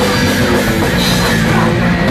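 Punk rock band playing live, a drum kit with cymbals driving a loud, dense, steady wall of amplified band sound.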